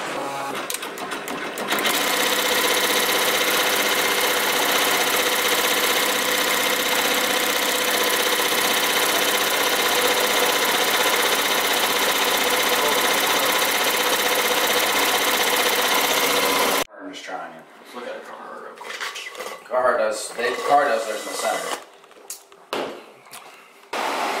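Commercial embroidery machine stitching a cap at speed: a steady, fast mechanical running sound that holds even for about fifteen seconds and then cuts off suddenly. Indistinct voices follow in a quieter room.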